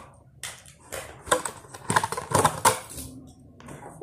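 A toy's plastic blister pack and cardboard backing being opened by hand: a string of irregular sharp clicks and crackles.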